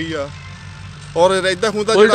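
A man speaking in Punjabi; he pauses for most of the first second, then talks again. Under the voice runs a steady low engine drone.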